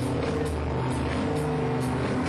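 Minimal electro dance music played live from an Ableton Live set, heard loud through a camera's microphone in a club: sustained synth notes over a steady beat with regular ticking hi-hats.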